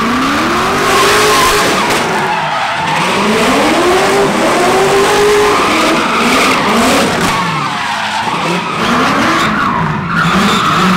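LS V8-swapped E46 BMW 3 Series drifting: the engine revs rise and fall again and again as the rear tyres squeal and skid sideways.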